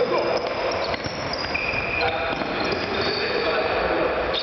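Players' voices calling out in a large echoing sports hall, over the knocks of a futsal ball being kicked and bouncing on the court floor.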